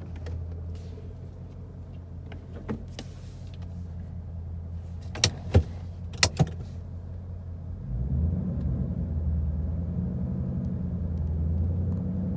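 A 2014 Ford Mustang GT's V8 running inside the cabin: a steady idle, then from about two-thirds of the way in, raised a little and held near 1,500 rpm as the clutch is let out for a first-gear start. A few sharp clicks come near the middle.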